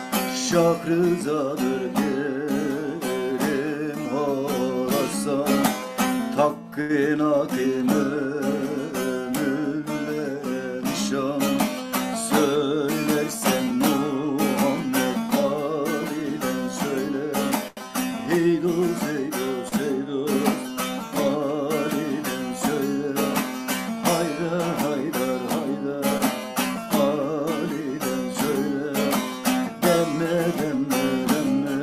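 Bağlama (saz), the long-necked Turkish lute, plucked in a continuous run of quick notes playing a folk melody.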